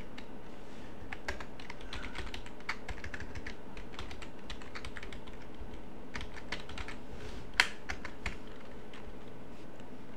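Typing on a computer keyboard: irregular, scattered keystrokes, with one noticeably louder key strike late on.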